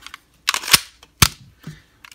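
Sharp metallic clicks as a loaded magazine with a +1 extension is pushed into a SIG Sauer P225-A1 pistol and locks in on a closed slide; the two loudest come about three quarters of a second and a second and a quarter in.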